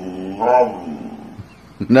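Boxer dog vocalising back at its owner in protest: a low grumble, then one rising-and-falling, voice-like call about half a second in.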